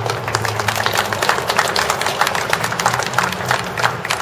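A small crowd applauding: a dense patter of hand claps that starts right away and begins to thin out near the end, over a steady low hum.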